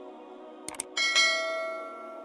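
A couple of quick mouse clicks, then a bright bell chime about a second in that rings on and slowly fades: a subscribe-and-notification-bell sound effect, over soft ambient background music.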